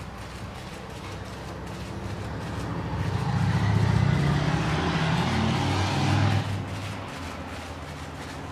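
A motor vehicle passing by, its engine swelling over a few seconds and dropping away sharply about six and a half seconds in, over a steady low hum.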